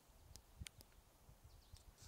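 Near silence, with a few faint clicks in the first second.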